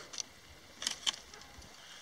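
Short sharp cracks of woody stems being snapped and cut with a machete while old growth is cut back from a shrub. One crack comes just after the start and a close pair about a second in.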